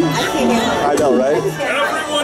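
Voices and chatter from a crowd, with music playing in the background.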